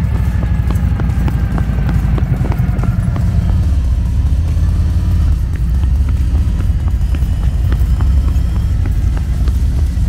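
Harley-Davidson Road Glide Special's V-twin engine running at low speed as the bike rolls off, a deep, steady pulsing exhaust note.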